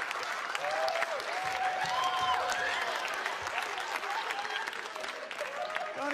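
Live comedy audience applauding, with scattered laughter and voices in the crowd, in response to a joke.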